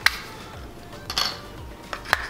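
Hard plastic clicks and snaps of a car phone mount's parts being unclipped and handled: a sharp click just after the start, another about a second in, and one more near the end.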